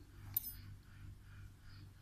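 A single light metallic click about a third of a second in, then faint rustling as cotton yarn is handled: a small steel needle picked up from beside the steel crochet hooks.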